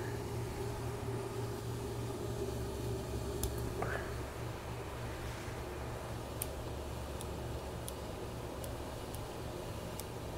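Steady low hum of a fan running in a grow tent, with a handful of faint, sharp clicks spread through the second half as clone cuttings are snipped from the plant.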